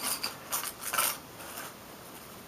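A few small, hard clicks and light clatter of a fingerboard deck and its parts being handled, bunched in the first second and a half.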